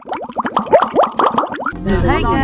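Bubble-popping sound effect: a quick string of short plops, each rising in pitch, about ten a second, stopping just before the end.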